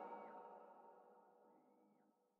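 Near silence: the last of an electronic music track's reverb tail dies away in the first moment after playback has stopped.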